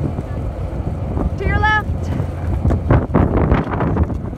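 Wind buffeting the microphone over a steady low rumble of skateboard wheels rolling on asphalt, with a short high-pitched shout about a second and a half in.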